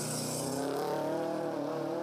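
Race-prepared SUV's engine running hard as it passes and pulls away uphill. The note holds steady with a slight dip and rise in pitch midway.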